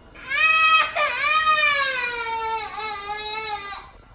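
A toddler crying: one long wail of about three and a half seconds that starts high and slides slowly lower, with a brief catch about a second in.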